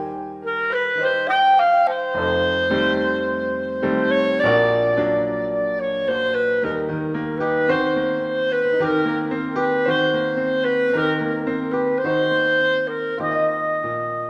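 Clarinet playing a melody of long held notes over grand piano chords.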